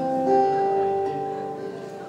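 Acoustic guitar: a couple of plucked notes struck at the start, left ringing and slowly fading.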